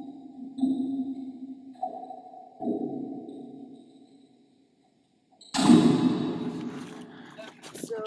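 Four sonar-like electronic pings about a second apart, each ringing and fading away. After a short silence comes one sudden loud noisy hit that dies away over about two seconds, with voices starting near the end.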